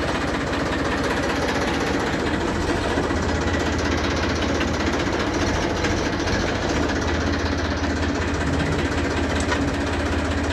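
TAFE tractor's diesel engine running steadily, with a dense, even clatter.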